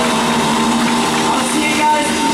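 Rock band playing live and loud, with distorted electric guitars holding sustained notes over a dense wash of band sound.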